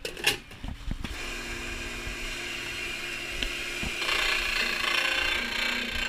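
A few knocks and clatters, then about a second in an electric appliance motor starts and runs steadily with a steady hum and whine. From about four seconds in it turns louder and harsher, with a grinding edge.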